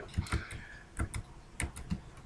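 Computer keyboard keys clicking: a few short, irregular keystrokes as windows are switched with Alt+Tab.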